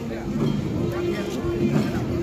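Outdoor festival din of a Wangala drum dance: many voices mingling over a steady held pitched tone, with low irregular thumps from the long Garo drums.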